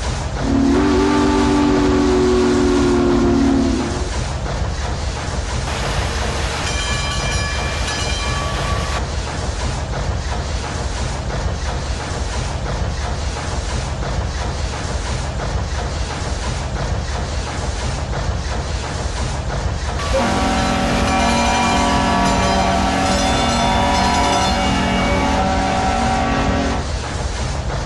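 Steam train sound effects: a steady low chugging with chime whistle blasts over it. There is a low, three-second blast near the start, a higher, shorter one a few seconds later, and a long blast over the last six seconds.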